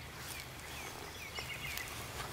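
Quiet outdoor field ambience with a bird chirping faintly in a repeated series of short, falling notes, about three a second.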